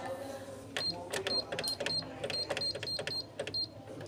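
Canon MF8280Cw printer's control panel beeping on each key press: about nine short, high beeps in quick succession over three seconds, each with a light tap, as characters of a Wi-Fi password are entered.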